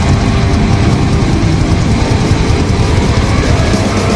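Live hard rock band playing loud and dense: sustained distorted electric guitar and bass chords over drums.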